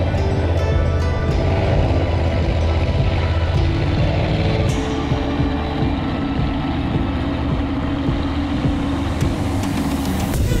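Racing catamaran's engines running at speed, with a steady low rumble and the rush of water and wind, under background music.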